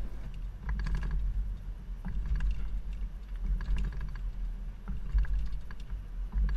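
Low rumble of a vehicle driving slowly over alternating speed bumps, heard from a camera mounted at the hitch, with scattered light clicks and knocks from a Curt hanging hitch bike rack and its road bike as the twisting motion works them.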